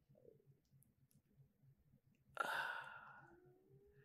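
A person sighs a little past halfway: one long breathy exhale that fades out over about a second and a half.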